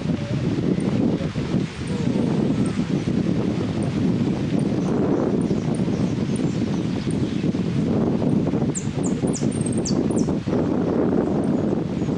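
Steady low wind rush across the microphone, with faint single high chirps throughout. Near the end, a saffron finch (Argentine jilguero) gives a quick run of high, falling notes.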